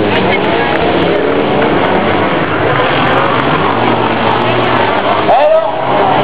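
Several race car engines running and revving together, their pitch rising and falling as the cars race past.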